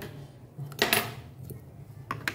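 Metal dissecting instruments give a single short clink about a second in, handled against the dissection tray.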